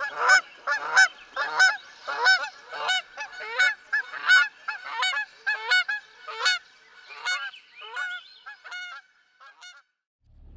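Several geese honking in a rapid run of short calls, about two a second and sometimes overlapping, thinning out and fading near the end.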